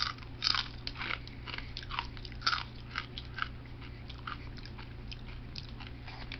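A person biting into and chewing crunchy food: irregular crunches, several a second, the loudest about half a second in and again near the middle.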